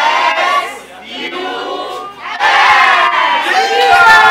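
A crowd of children shouting and cheering together, their voices overlapping in loud bursts that swell louder about two and a half seconds in.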